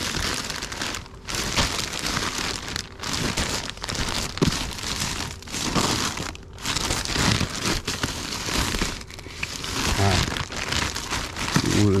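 Plastic poly mailer bags rustling and crinkling in an irregular run as a hand rummages through a bin full of them.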